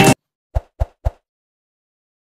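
Background music cuts off abruptly, then three short pop sound effects come in quick succession, about a quarter second apart, as the animated subscribe end screen starts.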